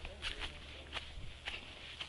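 Footsteps on grass and soft soil, a few steps about half a second apart, with a light rustle of grass underfoot.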